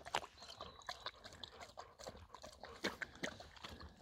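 Faint, irregular wet clicks and small splashes: German shepherds moving and lapping in a shallow pool of water.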